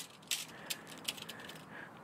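A few faint clicks and light handling noise over a low steady hiss.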